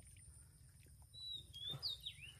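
A bird calling: thin, high whistled notes that slide up and down, starting about halfway through and faint overall. Underneath there is a short soft sloshing of hands working in shallow muddy water.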